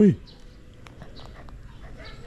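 A seven-week-old puppy wriggling on a person's lap and mouthing at a hand: faint rustling with a few small clicks.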